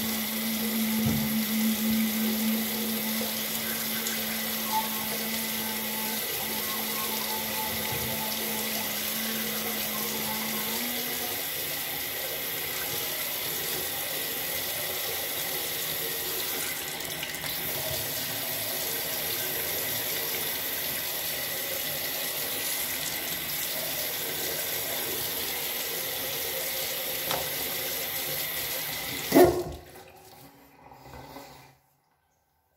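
A bathroom tap running steadily into a sink, with a low steady hum for about the first ten seconds. Near the end a short loud knock sounds and the running water stops.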